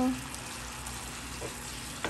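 Chicken adobo sizzling steadily in a frying pan as its soy-based sauce cooks down and thickens.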